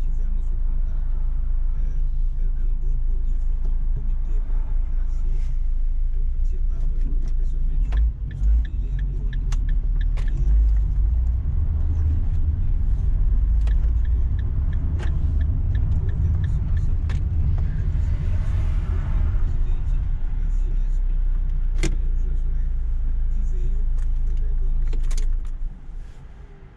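Car driving, heard from inside the cabin: a steady low rumble of engine and road noise, with scattered sharp clicks and knocks. The rumble drops off sharply just before the end.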